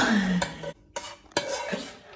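A utensil scraping rice out of a non-stick frying pan into a bowl, loud at first and dying away, followed by a few sharp taps of the utensil against the pan.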